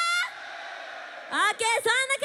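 A young woman's high-pitched shout through a stage microphone, calling on a live crowd to make more noise. Her long drawn-out syllable breaks off at the start, the audience cheers for about a second, and then she shouts again with sliding pitch.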